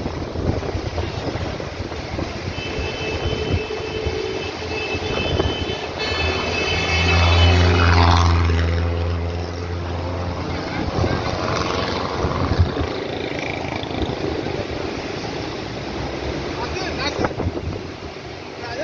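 Indus River in high flood rushing through the barrage gates as a steady roar of water, with a motor vehicle's engine passing close, swelling to its loudest about eight seconds in and then fading.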